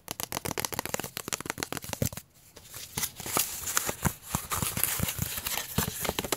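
Fingers tapping and scratching on cardboard packaging inserts, a quick, dense run of dry clicks and scrapes with a short pause about two seconds in.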